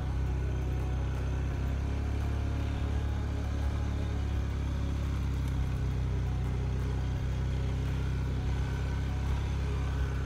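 Off-road utility vehicle's engine running steadily as it drives along, a continuous low drone.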